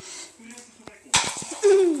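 A quick run of knocks on a laminate floor about a second in, then a short falling "ooh" from a woman's voice.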